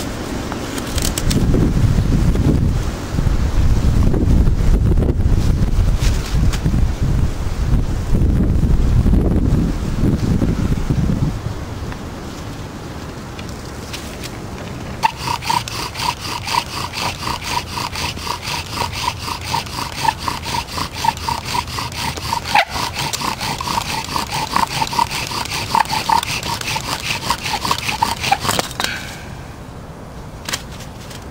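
Bow drill in use for a friction fire: the wooden spindle squeaking against the hearth board with each back-and-forth stroke of the bow, a high squeal pulsing in rhythm from about halfway through until just before the end. Before it, a loud low rumbling noise fills the first third.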